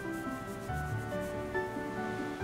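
Soft background music with long held notes, and a hand rubbing quickly back and forth on a child's cloth pyjamas in the first part.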